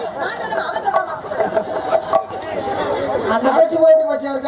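Actors' speech through stage microphones and loudspeakers, carrying on throughout.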